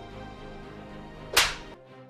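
Soft background music with a single short, sharp swish about one and a half seconds in.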